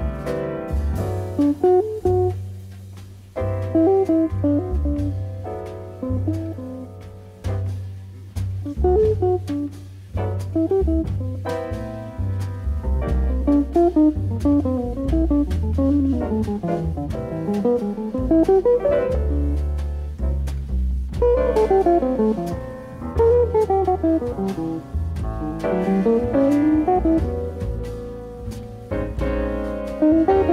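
Jazz quartet recording: a hollow-body electric jazz guitar plays fast single-note lines that climb and fall, over an upright bass line and drums with cymbals.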